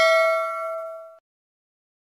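Bell-like notification ding from a subscribe-button sound effect, ringing out with a few steady tones and fading, then cutting off abruptly about a second in.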